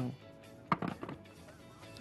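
A sharp plastic knock about a second in, then a few lighter clicks, as the motor top of an electric food chopper is set back onto its plastic bowl. Faint background music runs underneath.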